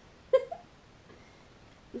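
Siberian Husky giving a short, high whine about a third of a second in, with a quieter second yelp right after, while waiting for another treat.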